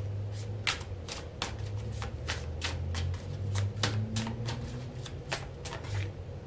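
Tarot cards being shuffled by hand: a string of short, sharp card slaps, about three a second, over a low steady hum.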